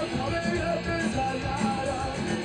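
A punk rock band playing live, with electric guitar, bass and drums running on without a break, heard on an audience recording.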